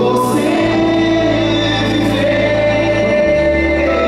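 Live music: a male singer sings a long, wavering held line over sustained accompaniment. The bass notes change about half a second in and again a little after three seconds.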